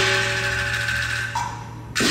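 Chinese opera percussion of cymbals and gong: a crash at the start that rings on and slowly fades, then a fresh crash near the end.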